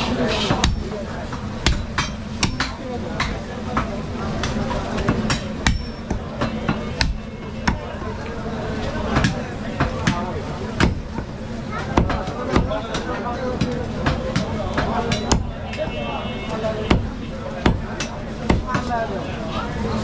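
Butcher's cleaver chopping beef on a wooden log chopping block: sharp, irregular chops, roughly one a second.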